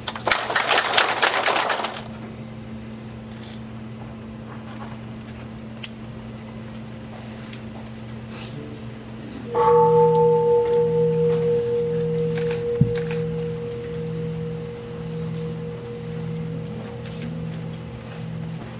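A Buddhist temple bowl bell is struck once about ten seconds in and rings on with a long, slowly fading tone, its low hum pulsing as it dies away. A short burst of rapid strikes comes at the very start, over a low steady hum.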